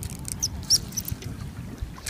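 Wind buffeting the microphone with an uneven low rumble, with a few short, high chirps about half a second to a second in.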